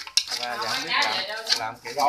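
Wooden chopsticks knocking and scraping against an aluminium cooking pot while chopped softshell turtle meat is tossed with seasoning, with a few sharp clinks.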